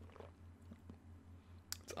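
Faint mouth and lip sounds of a man tasting a sip of soda, with a click near the end, over a low steady hum.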